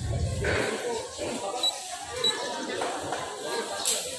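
Indistinct voices at a market stall, with two short high beeps about a second and a half and two and a quarter seconds in, from the keypad of a digital price-computing scale as the price is keyed in.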